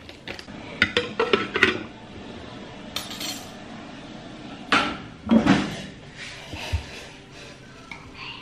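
Spoons and dishes clinking and knocking on a kitchen counter: a run of sharp clicks early on, a short rustling burst about three seconds in, and the loudest clatters about five seconds in.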